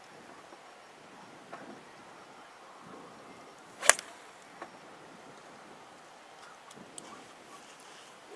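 Golf driver striking a ball off the tee: a single sharp crack about four seconds in.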